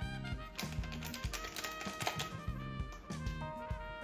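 Background instrumental music with a regular beat, notes held over a repeating bass line.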